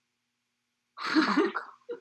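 After about a second of silence, a man laughs: a breathy burst, then a few short, quick laughs near the end.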